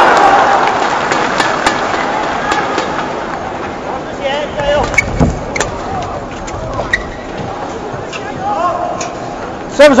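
Badminton rally: rackets striking the shuttlecock in a string of sharp, irregular pops, over an arena crowd that is loud at the start and dies down. A loud voice calls out near the end.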